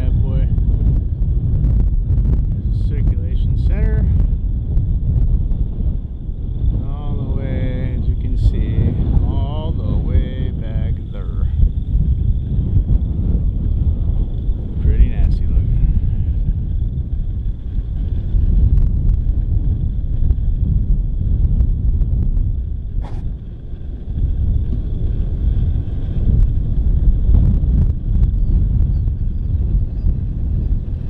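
Storm wind buffeting the microphone: a loud, steady low rumble, with faint voices about a third of the way in.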